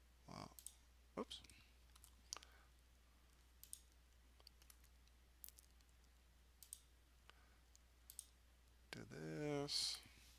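Faint, sharp computer mouse and keyboard clicks, scattered about once a second. Near the end comes a short held vocal 'um' from the narrator.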